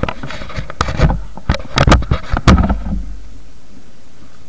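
Footsteps crunching on loose gravel and dirt, irregular steps with a low rumble on the microphone, stopping about three seconds in.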